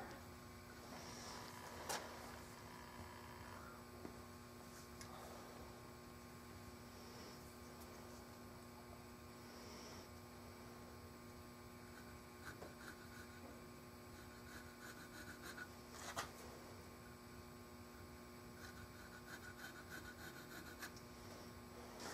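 Near silence: a steady low electrical hum, with a few faint clicks and taps as tools are handled on the workpiece, the clearest about two seconds in and again near sixteen seconds.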